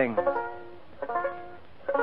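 Banjo playing the introduction to a song: plucked chords struck at the start, again about a second in and once more near the end, each ringing and dying away.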